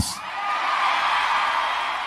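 A congregation cheering and shouting, building over the first half second and then holding steady.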